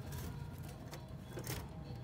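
Faint handling noise as the sheet-metal draft inducer fan assembly is lifted off an old gas furnace, with one light knock about one and a half seconds in.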